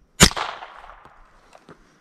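A single shot from a Winchester Wildcat .22 LR rifle about a quarter second in, a sharp crack that dies away within a second, followed by two faint clicks.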